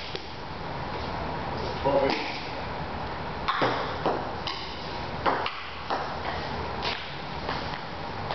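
Table-tennis rally: a celluloid ball clicking off paddles and the table, about eight sharp hits at an uneven pace of one to two a second, beginning about two seconds in, with a short room echo after each.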